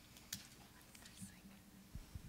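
Near silence: quiet room tone with faint whispering.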